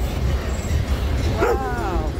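A dog barks once about one and a half seconds in, the bark trailing off into a falling whine, over the steady low rumble of a freight train rolling past.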